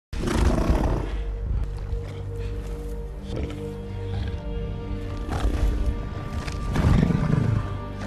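Film soundtrack: a troll's deep roars over sustained music holding low notes, loudest at the start and again near the end.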